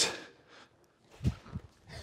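A couple of short, soft low thumps about a second in, from bare feet and body shifting on a foam mat as a man drops into a deep duck.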